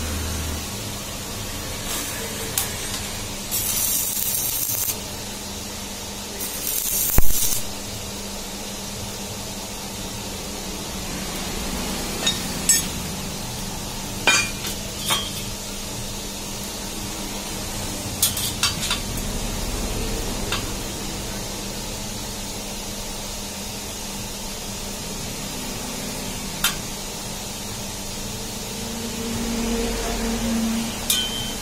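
Stick (arc) welder striking two short tack welds on steel tubing, each a brief crackling hiss, the second opening with a sharp thump. A steady electrical hum runs under it, and metal parts clink a few times later on.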